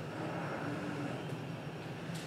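Steady low background hum with no distinct sound events.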